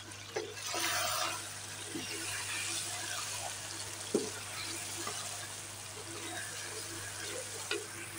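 Chicken curry sizzling in a nonstick wok while it is stirred with a wooden spatula, the water let out by the tomatoes cooking off. A few short knocks come from the stirring.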